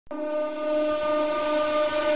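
Radio station ident sound: a steady pitched tone starts suddenly and holds one note over a hiss.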